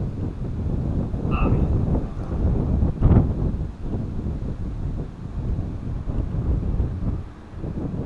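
Wind buffeting the microphone, a rough low rumble that rises and falls throughout, with a single sharp knock about three seconds in.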